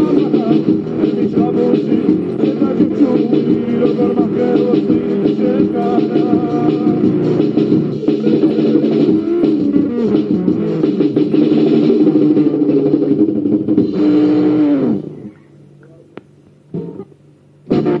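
Amateur rock group recording, with electric guitar, bass and band playing a song. About fifteen seconds in the song stops, its last note falling in pitch. After a short quieter gap the next piece starts, with guitar and keyboard, near the end.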